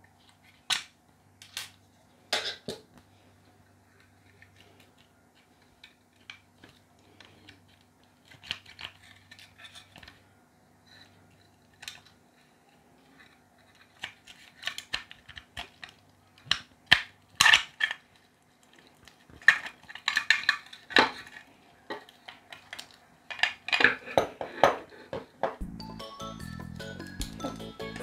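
Metal parts of a Blue Yeti microphone clicking and clinking as its screws are turned out and the circuit-board assembly is worked free of the metal housing: scattered short clicks and knocks, sparse at first and busier in the second half.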